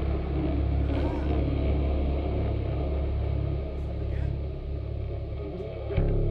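Low, steady drone of held notes from the band's amplified instruments, with a few faint clicks in the second half.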